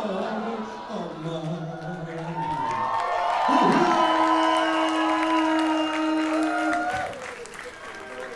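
Club concert crowd cheering and applauding at the end of a hip-hop song, with a man's voice over the PA. A long held tone sounds from about three and a half seconds in until about seven seconds, and then the noise falls away.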